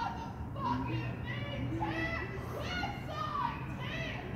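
Indistinct high-pitched voices calling and chattering, like children at play, over a low steady hum.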